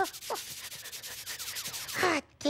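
A steady scratchy rubbing sound lasting about a second and a half, after a brief high voice sound at the start.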